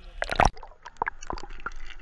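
Seawater sloshing and gurgling around a submerged action-camera housing, heard muffled, with irregular splashes. The loudest burst comes about half a second in.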